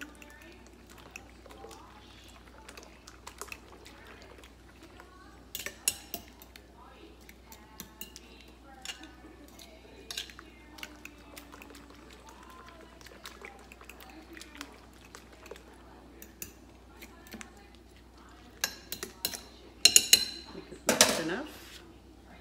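A metal utensil stirring beaten raw eggs with chopped vegetables in a bowl, scraping and clinking against the bowl in many small taps, with a louder run of clinks near the end.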